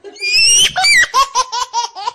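A person laughing: a high-pitched squeal, then a quick run of short laughs, about six a second.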